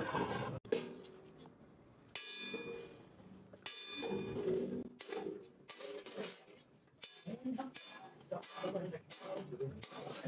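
Hand hammer striking a steel set tool held against a thin steel disc cut from an oil drum: a handful of separate metallic blows a second or more apart, some ringing briefly.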